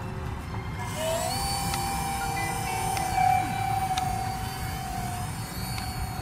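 Electric ducted fan of a hand-launched RC cargo jet, its whine rising in pitch about a second in as the throttle comes up, then holding steady until near the end. A low rumble runs underneath.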